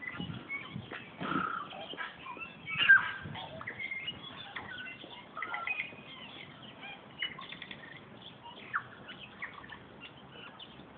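Birds chirping and calling in short scattered notes, the loudest about three seconds in, with a few low thumps in the first second and a half.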